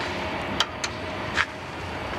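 Train passing nearby: a steady low rumble. Three short sharp clicks stand out over it, about half a second, just under a second, and a second and a half in.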